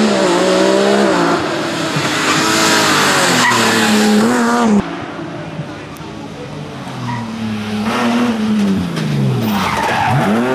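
Rally car engine revving hard, its pitch climbing and dropping again and again as it works through the gears. A loud hiss rides over it and drops off suddenly about five seconds in, and the engine then rises and falls again near the end.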